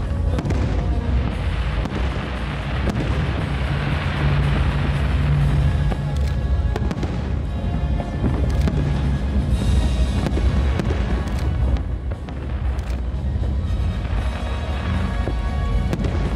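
Music playing steadily, with aerial firework shells bursting: several sharp bangs scattered through it.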